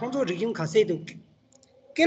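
A person speaking for about a second over a video-call connection, then a couple of short clicks in a brief pause before talking starts again.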